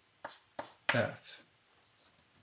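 Three short knocks and clatters in quick succession, the last and loudest about a second in, like small objects being handled.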